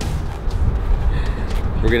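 Low, uneven rumble of wind buffeting the microphone outdoors, with the man's voice starting again near the end.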